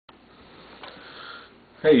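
A man's faint breath drawn in close to the microphone over low room noise, then his voice begins near the end with a loud 'Hey'.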